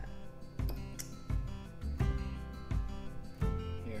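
Background music with a steady beat, about one beat every three-quarters of a second, under held notes.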